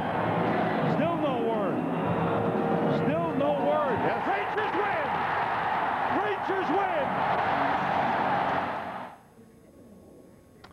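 Hockey arena crowd cheering loudly after a goal is confirmed, a dense roar with many voices shouting in rising-and-falling yells; it cuts off abruptly about nine seconds in.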